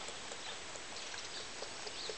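Lamb sucking at a feeding-bottle teat: soft, irregular smacking clicks over a steady background hiss.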